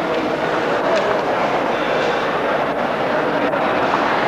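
Crowd chatter: many voices talking at once in a steady, dense hubbub, with no single voice standing out.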